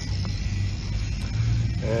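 Steady low rumble with a faint hiss from the open-air surroundings, with no distinct event in it.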